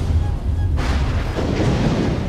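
Loud, deep rumbling from a film soundtrack's dramatic score and sound effects, with a rushing swell coming in just under a second in.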